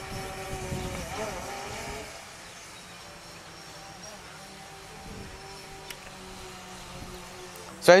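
DJI Phantom 3 Standard quadcopter hovering overhead, its propellers giving a steady hum of several tones. Wind rumbles on the microphone in the first couple of seconds.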